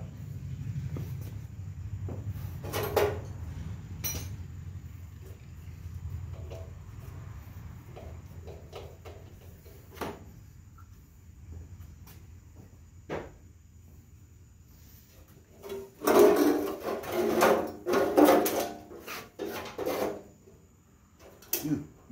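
Rear sheet-metal fender pan of a Cub Cadet 126 garden tractor being worked loose and lifted: a run of clunks, scrapes and rattles about two-thirds of the way through, with a few single clicks before it. A faint low hum fades away in the first half.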